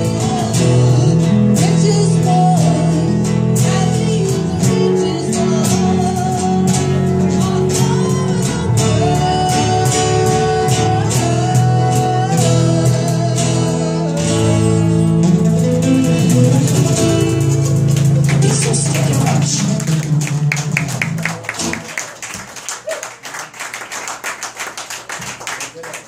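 Live acoustic band song: a woman singing over strummed acoustic guitar, electric guitar and hand percussion with cymbal. About three-quarters of the way through the full band drops away, leaving only quieter, fast strumming or tapping to the end.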